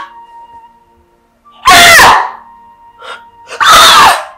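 A woman wailing loudly in grief, two long cries about two seconds in and again near the end, over quiet background music with a held tone.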